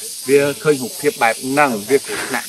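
A man talking in Khmer, with a steady high hiss behind his voice.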